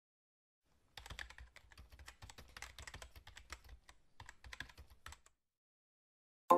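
Fingers typing quickly on a laptop keyboard: a faint, steady stream of key clicks that starts about a second in and stops shortly before the end.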